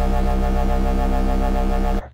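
A deep, sustained synthesized bass note from an Xfer Serum drum and bass roller bass patch, with a faint hiss from its noise oscillator mixed in low to fill the space. The note holds steady and cuts off suddenly at the end.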